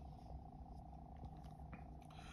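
Near silence: faint room tone with a low steady rumble and a few soft ticks.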